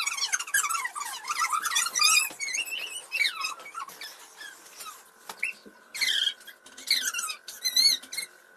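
High-pitched squeals and shrieks from children play-fighting on a bed. The cries come one after another in short, wavering bursts, with a brief lull around the middle.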